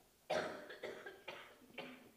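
A person coughing: one short cough, then three fainter ones about half a second apart.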